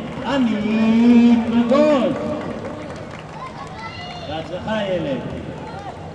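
Men's voices calling out: a loud, drawn-out call in the first two seconds, then scattered shorter shouts from around the ground.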